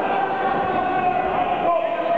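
A voice shouting one long held note, like a drawn-out cheer of encouragement to a boxer, over the steady noise of a hall crowd.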